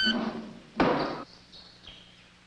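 Infant rhesus monkey giving a short, high call that rises in pitch, followed about a second in by a short harsh scrape and then a faint thin tone.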